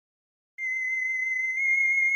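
A single steady, high electronic tone with a slight waver, starting about half a second in after silence: the opening of the title music.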